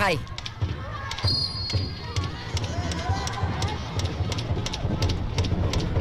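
Football stadium match sound: repeated low thumps and many sharp clicks over crowd noise, with a brief high tone about a second in.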